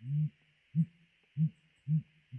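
Male blue grouse hooting in courtship display, its inflated neck sacs giving four deep, low hoots: a longer one at the start, then three shorter ones about every half second.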